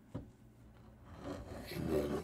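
A kitchen knife sawing through the crisp, browned crust of a rolled pastry and rasping against a wooden cutting board. It follows a small tap near the start and grows louder towards the end.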